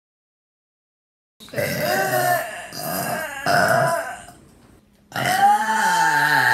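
Loud, drawn-out burps from a young woman. After about a second and a half of silence, one long burp runs for about three seconds, wavering in pitch over several pushes and fading at the end. A second long burp starts about five seconds in.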